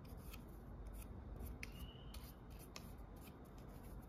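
Faint clicks and rubbing of the Xiaomi Mi Vacuum Cleaner Mini's stainless steel mesh strainer filter and its plastic ring being twisted and pulled apart by hand. A short rising high chirp sounds a little under two seconds in.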